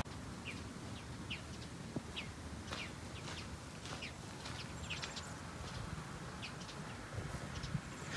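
Small birds chirping: short, high chirps, about two a second and irregularly spaced, over a faint, low background rumble.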